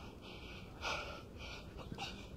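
A man's sharp, heavy breaths out during a bodyweight workout, the strongest about a second in and another at the very end.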